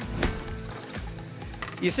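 Background music with two short knocks, about a quarter second and a second in; a voice starts near the end.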